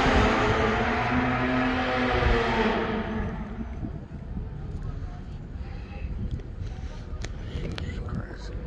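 A car engine revving loudly, its pitch bending up and down, fading away about three seconds in. A few sharp clicks follow near the end.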